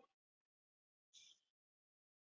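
Near silence, with one faint, brief noise about a second in.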